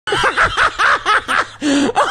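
A man laughing hard in quick repeated pulses, about four a second, ending in one drawn-out lower sound near the end.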